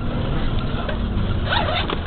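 Steady low rumble of a moving bus's engine and road noise, heard from inside the bus. A brief wavering sound comes near the end.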